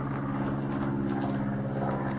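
A steady low mechanical hum with several even tones, like a motor or engine running without change.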